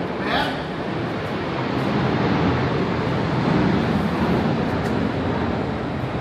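Steady rushing roar of parking-garage ambience, with a brief snatch of a voice just after the start.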